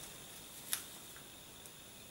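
Faint handling of a folded paper glider: one short, crisp crackle as the sheet, folded in half, is pressed flat between the hands, a little before the middle, with a couple of fainter paper ticks after it.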